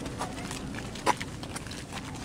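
Footsteps on a paved road while walking: a few sharp clicks, the loudest about a second in, over steady outdoor background noise.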